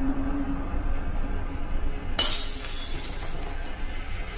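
Low, dark horror score with a rumble, broken about two seconds in by a sudden bright crash like glass shattering that rings on for about a second.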